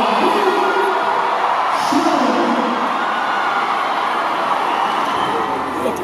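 Large arena crowd cheering steadily at a concert, loud and dense, with a couple of short held notes sounding over it near the start and about two seconds in.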